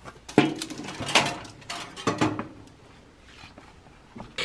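Foil-lined metal baking tray being pulled out of a toaster oven over its wire rack: three clanking scrapes over about two seconds.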